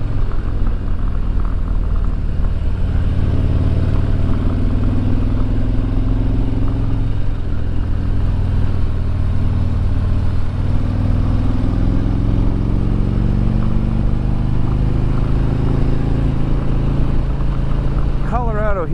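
Harley-Davidson Road Glide's V-twin engine running steadily while riding, heard from on the bike over a rush of wind noise. The engine note rises and eases off a couple of times as the throttle is worked through gentle curves.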